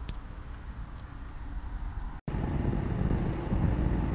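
Low, steady outdoor rumble with no distinct source, quiet at first, then louder after a brief cut to silence about two seconds in.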